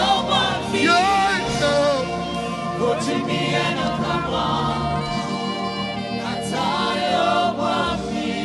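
Gospel worship song sung by a choir, with wavering held notes over steady sustained accompaniment.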